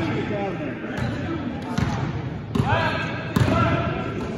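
A basketball dribbled on a gym floor: four bounces, a little under a second apart, with a voice shouting over the later ones.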